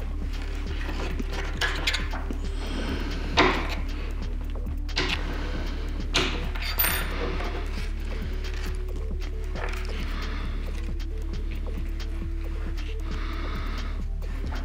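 Soft background music, with a few sharp little clicks and taps, the loudest about three seconds in, as micro servos and their plastic servo arms are handled and pressed together.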